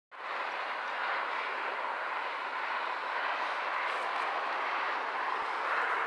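Steady wash of distant freeway traffic noise, with no single vehicle standing out.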